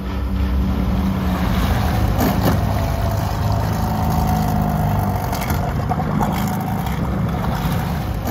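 Small outboard motor on a dinghy running steadily at low throttle, a low even drone.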